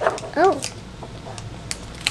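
A dog gives one short whine about half a second in, its pitch rising and then falling, with a few light crinkles and clicks of a plastic wrapper being handled.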